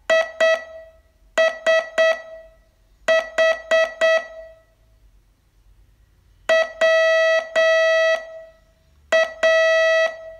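Morse code sent as a steady beep tone, keyed into short dots and longer dashes that form separate characters, with pauses of one to two seconds between them: a receiving test of letters to be copied down.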